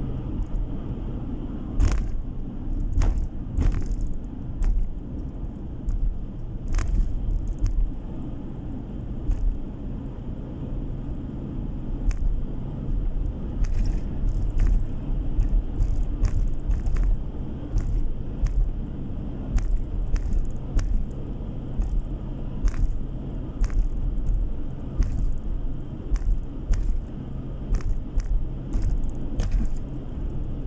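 Car driving at steady road speed, heard from inside the cabin: a continuous low rumble of engine and tyres on the road, with scattered short clicks and knocks.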